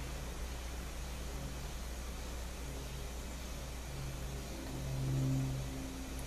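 Low hum of a vehicle engine that comes and goes, swelling briefly about five seconds in, over a steady background hum.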